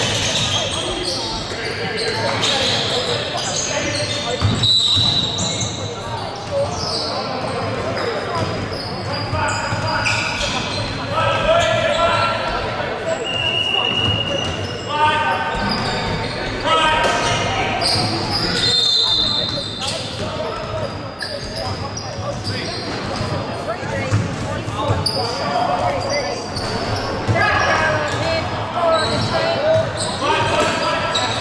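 Indoor basketball game in a large, echoing gym: a basketball bouncing on the wooden court, with players and spectators calling out indistinctly. A few short high-pitched tones cut through, about four seconds in, near the middle and again about two-thirds of the way through.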